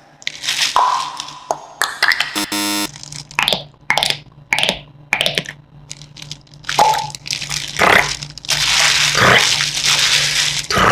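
A run of sharp crackles and crunches: a plastic water bottle being crushed, then bones cracking, both as real sounds and as mouth-made beatbox imitations. The crackling turns denser and more continuous near the end.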